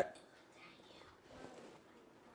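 A quiet pause in speech: faint room tone with a brief, soft, whisper-like voice sound about one and a half seconds in.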